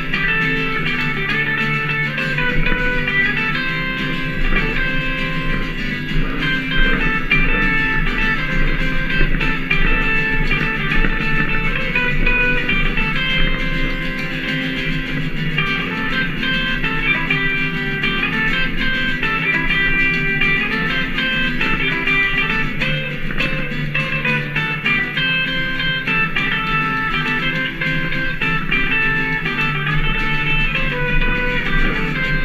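Live country-swing band playing an instrumental break: electric lead guitar over strummed acoustic guitar and upright double bass, at a steady loudness throughout.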